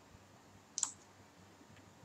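A single short, sharp click a little under a second in, from the computer being worked at, over a quiet room background.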